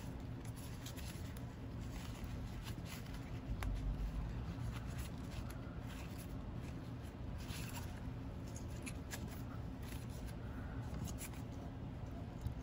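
Faint rustling and handling of grosgrain ribbon as hands pull and fold it on a hair bow, with a few small scattered clicks.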